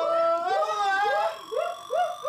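A voice singing in a long, held note that slides upward, followed by a run of short notes that each rise and fall.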